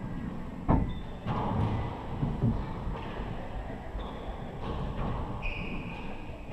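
A handball is struck hard and hits the wall of an indoor court. There is one loud, sharp smack about a second in, followed by softer thuds.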